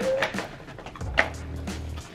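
Cardboard takeout boxes being opened, with light clicks near the start and one sharp snap just after a second in, over background music.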